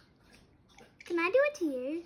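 Tap water running faintly into a kitchen sink. About a second in, a child's wordless sing-song voice, rising and falling in pitch, becomes the loudest sound.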